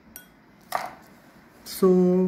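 Small knocks of a metal pin and fingers against a glass dish. There is a faint clink with a short ring just after the start, then a louder brief tap about three-quarters of a second in.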